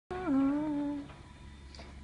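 A person's voice humming one note: it slides down at the start, is held for about a second, then stops. A low steady hum stays underneath.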